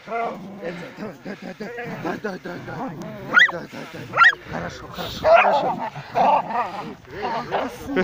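A dachshund and a red fox fighting at close quarters: wavering whines and yelps throughout, two sharp rising yelps between three and four and a half seconds in, then louder cries.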